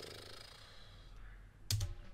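Quiet room with a soft breath fading out, then a few sharp clicks near the end from a computer mouse as the video is paused and skipped back.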